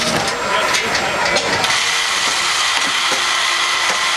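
Steady roar of the propane burners that fire a crawfish-boil cooker, with a high steady tone joining about one and a half seconds in and a few light knocks from the stirring paddle on the steel tray.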